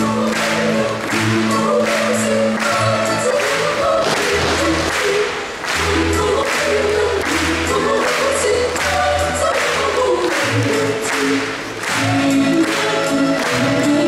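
Choral dance music: a choir singing a melody over instrumental accompaniment, with a steady beat of about two strikes a second.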